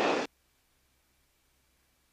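A man's voice finishes a phrase in the first quarter second, then near silence; no engine or water sound comes through.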